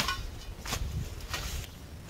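Hoe blade chopping into weeds and soil, three strokes a little under a second apart.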